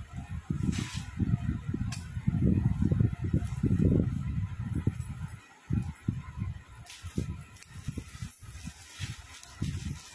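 Irregular low thumps and handling noise from movement close to the phone's microphone, with short crinkles of plastic packaging toward the end.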